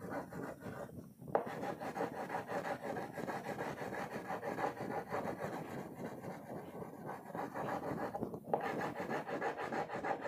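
Wax crayon rubbed back and forth on paper in quick, short strokes, a steady scratchy rasp. It pauses briefly about a second in and again near the end.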